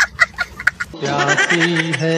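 A small child's high-pitched laugh in quick, clucking bursts of about five a second. About a second in it gives way to music with steady held notes.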